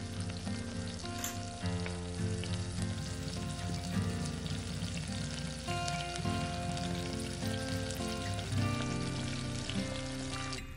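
Butter chicken sizzling in a miniature stainless-steel pot on a tiny stove, with the light scrape and clink of a small spoon stirring. Soft background music runs underneath.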